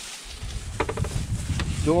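The driver's door of a 1961 Ford Falcon wagon that has sat out in a field for decades being unlatched and pulled open, with a brief clicking creak about a second in.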